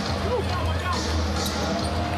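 Live NBA game sound in an arena: steady crowd noise with a basketball dribbled on the hardwood court and voices in the mix.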